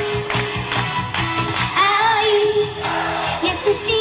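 A female pop singer singing live through a PA system over pop backing music with a steady beat; her voice comes in about halfway through.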